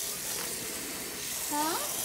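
Kitchen faucet running a steady stream into a stainless steel sink, an even hiss of falling water.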